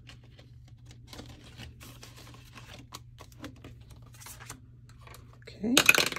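Faint rustling and light crinkling ticks of a paper dollar bill being slipped into a clear plastic binder envelope pocket and the pocket handled, over a low steady hum.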